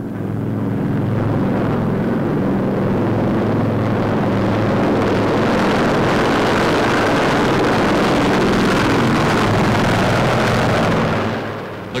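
Four-engine Martin Mars flying boat's radial piston engines droning as it flies low past. The drone builds over the first second, holds steady and dies away near the end.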